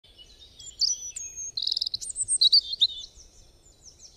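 Small birds singing: a run of quick chirps and whistled slides, with a fast trill about one and a half seconds in, growing fainter near the end.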